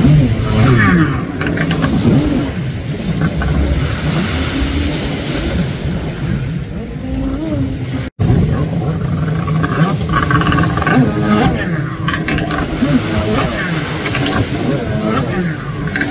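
Freestyle jet ski engines revving up and down over and over, their pitch rising and falling as the riders throw the skis through tricks on the water. The sound drops out for an instant about eight seconds in.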